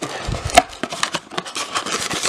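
Trading cards being handled: a string of small clicks and rustles of card stock, with one sharper click about half a second in.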